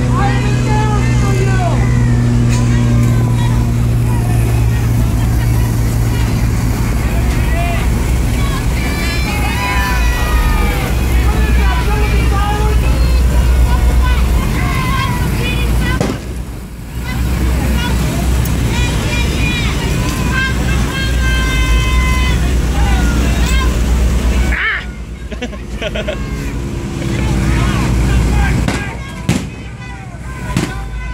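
Boat engine running with a steady low drone beneath many people's voices shouting and chattering across the water. The sound dips briefly about halfway through and again near the end.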